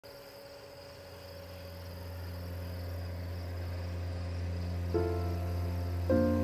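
Crickets chirping in a steady high trill over a low steady hum, fading in. Music notes enter about five seconds in.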